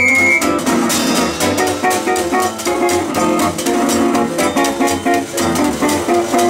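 Hot jazz rhythm section playing a fast ragtime number: an acoustic guitar strums chords in an even beat over a plucked upright string bass and a washboard rhythm, with the horns silent.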